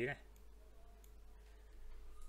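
The last syllable of a spoken word right at the start, then quiet room tone with a faint steady hum.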